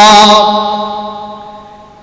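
A man's voice holding one long chanted note, steady in pitch, that fades away over the last second and a half.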